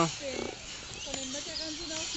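A dog growling in play as a big dog and a puppy tussle, heard faintly under distant voices.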